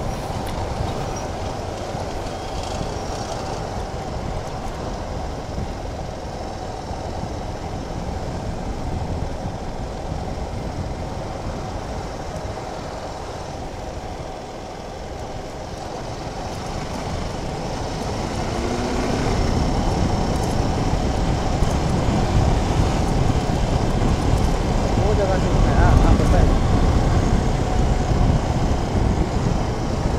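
Suzuki Gixxer SF 250 motorcycle's single-cylinder engine running on the move at low road speed, under steady wind and road noise. The low rumble grows louder from about two-thirds of the way through.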